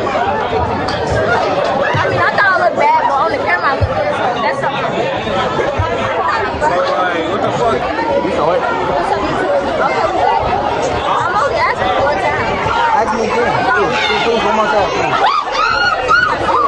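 Several teenagers talking over one another close to the microphone, no single voice clear, with the chatter of a school lunchroom behind.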